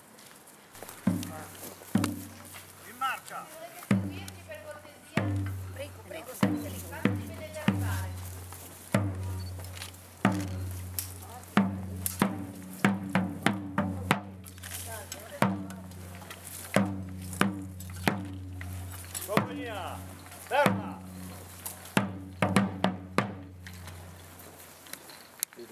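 Field drum beating a marching cadence: sharp strokes in uneven groups, each with a low ringing boom after it. Faint voices are heard in the background.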